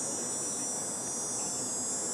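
Steady high-pitched buzz of insects, running without a break.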